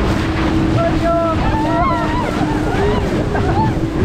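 Wind buffeting the microphone and water rushing and splashing under an inflatable tube ride towed at speed by a speedboat, with a steady engine drone underneath. Riders' voices call out over it.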